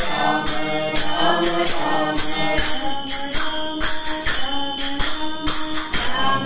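Voices singing a Tamil devotional bhajan, accompanied by small hand cymbals clinking a steady beat at about two strokes a second.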